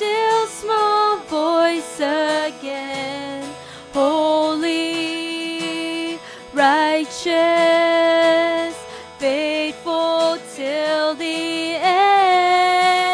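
Closing worship song: a woman singing a slow melody in phrases of long held notes with short breaths between them, over quiet instrumental accompaniment.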